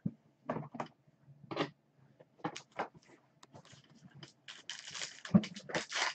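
Baseball trading cards being handled and flipped through: a series of short slides and clicks, thickening into a denser rustle over the last second and a half.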